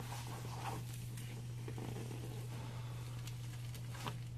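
Faint rustling of clothing against the padded treatment table as a chiropractor presses down on a patient during a thoracic adjustment, with a few soft ticks, over a steady low hum.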